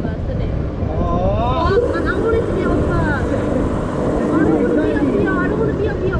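Steady wind rumble on a rider's camera microphone high on a fairground thrill ride, with people talking over it from about a second in.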